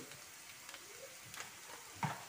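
Faint, steady sizzle of chopped onions frying in oil in a pan, with a couple of small faint clicks.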